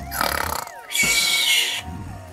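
Cartoon snoring sound effect: a short rasping inhale with a falling whistle, then a hissing exhale carrying a high steady whistle, over soft background music.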